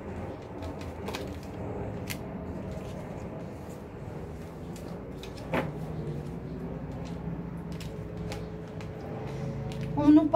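Oracle cards being handled and laid on a cloth-covered table: soft slides and light taps, the loudest tap about five and a half seconds in, over a low steady background hum.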